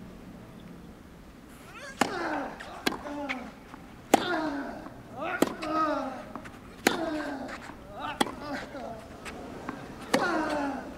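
Tennis rally on clay: crisp racket strikes on the ball about every second and a half, each followed by a player's short grunt that drops in pitch, with a quiet crowd hush before the first shot.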